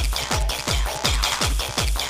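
Old-school Spanish makina from a DJ mix: a fast, steady four-on-the-floor beat of deep kick drums falling in pitch, about three a second, under busy electronic synths and percussion.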